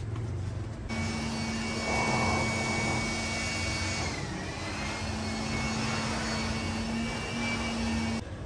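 Small handheld electric blower running with a steady whine, blowing dust out through a car's open doors. It starts about a second in and dips briefly in pitch midway.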